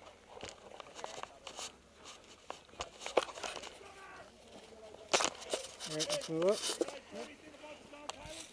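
Irregular crunches, clicks and rustling of clothing and gear close to the microphone as a player walks over dry dirt, with a man's voice briefly near the end.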